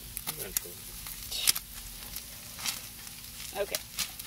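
Whitefish skin and fillets sizzling on hot gas grill grates, a steady hiss with a few sharp crackles and clicks scattered through it.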